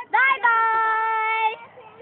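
A young girl's voice: a quick spoken word, then one long sung note held at a steady pitch for about a second, breaking off into softer voice sounds near the end.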